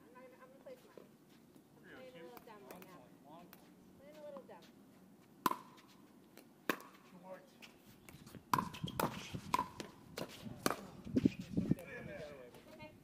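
Pickleball rally: a plastic ball struck back and forth by paddles, about half a dozen sharp hits with a brief ringing, starting about five seconds in and coming quicker in the last few seconds. Faint voices in the background.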